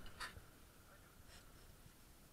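Near silence, broken by a short faint scratch just after the start and a fainter one about two-thirds of the way through.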